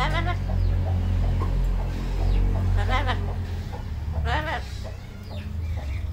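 Yellow-naped amazon parrot giving three short wavering calls, a second or more apart, over a steady low hum.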